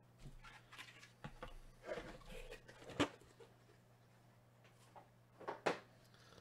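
Faint handling of a cardboard trading-card box and its cellophane wrapper on a table: scattered rustles and light knocks, with one sharp tap about halfway through and two quick knocks near the end.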